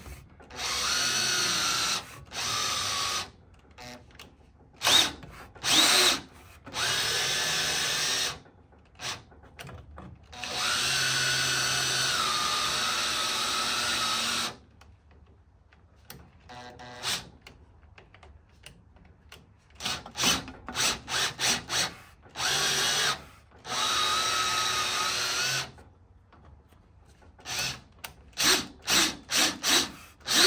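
Cordless Schwartmanns Beady beading machine on a Makita battery drive, its motor whining in stop-start runs of one to four seconds with quick trigger blips between, as flat rollers fold the edge of a sheet-metal strip to 90 degrees.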